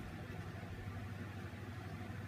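Steady low hum with a faint hiss underneath: the room's background noise.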